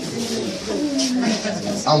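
A person's voice making low, drawn-out sounds with slowly sliding pitch rather than clear words.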